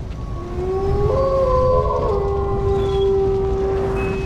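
Wolf howl sound effect: several overlapping tones rise in pitch over the first second or so and are then held, over a low rumble.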